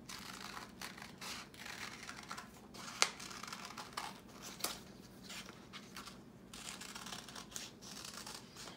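Small scissors cutting through a folded sheet of paper: a run of irregular snips with paper rustling as the sheet is turned, and one sharp click about three seconds in.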